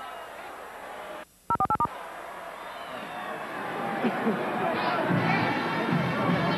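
Stadium crowd noise cuts out abruptly, then a quick run of five touch-tone beeps sounds, the DTMF cue tones a cable network sends to trigger local commercial insertion at a timeout. Crowd noise with chatter then returns and builds.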